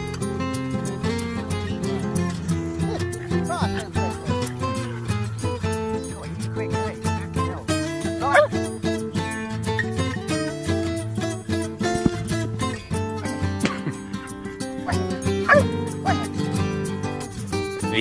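Dogs vocalising to each other, with several short whines and yips that rise and fall in pitch, a few seconds apart. Background music plays steadily under them.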